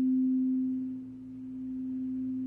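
A frosted quartz crystal singing bowl being rimmed with a mallet, sounding one steady low, pure tone. The tone swells and fades in a slow pulse about every second and a half as the mallet circles the rim.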